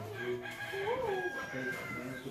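A rooster crowing once, the call rising and then falling in pitch about a second in.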